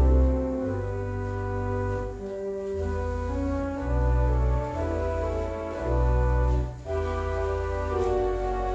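Church pipe organ playing a slow piece of held chords over deep pedal bass notes that change every second or two, with a short break between chords just before the end.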